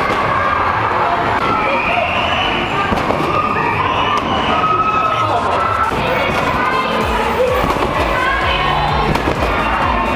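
Busy trampoline-park din: many overlapping voices, including children shouting, over music, with scattered thumps.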